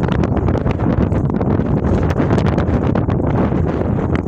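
Wind buffeting a phone's microphone: a loud, gusty low rumble.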